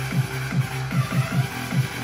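Electronic dance track playing through a floor wedge stage monitor, with a pulsing bass line that slides down in pitch on each note, about four notes a second.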